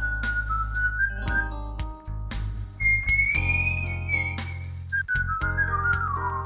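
A person whistling a slow lead melody in long held notes over a backing music track, emulating guitar bends. The whistle climbs to a higher note in the middle and bends downward near the end.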